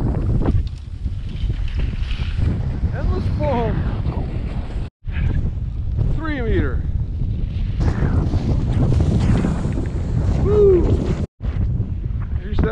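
Wind buffeting a helmet camera's microphone, a loud low rumble. It cuts out briefly about five seconds in and again near the end, and a few short rising and falling pitched sounds show through it.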